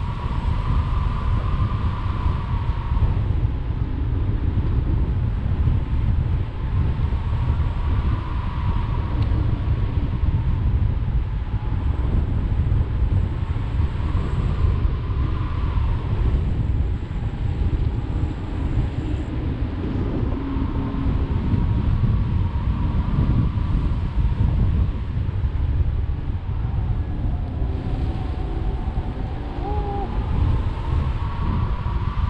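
Airflow buffeting an action camera's microphone in paraglider flight: a loud, steady low rumble. A faint, whistle-like tone slowly rises and falls every few seconds over it.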